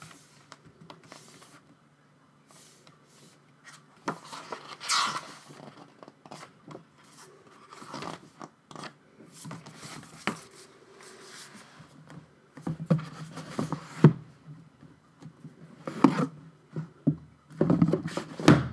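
Album photobook pages being turned and the cardboard packaging handled: paper rustling and scraping, with a few sharper knocks in the second half.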